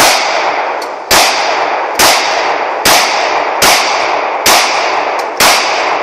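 Glock 19 9mm pistol fired seven times at a steady pace of about one shot a second, each sharp report followed by a long echo that fades before the next.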